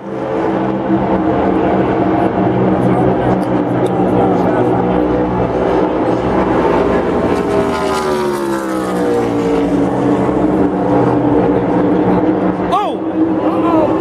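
A pack of NASCAR Cup Series stock cars' V8 engines running at speed as they pass close together; about eight seconds in the pitch slides down as the main pack goes by.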